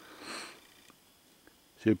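A man's short sniff through the nose, a breathy hiss lasting about half a second near the start, then quiet until he starts speaking again at the very end.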